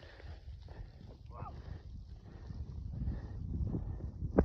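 Low, uneven rumble of wind and handling noise on the filming phone's microphone. A brief faint voice-like call comes about a second and a half in.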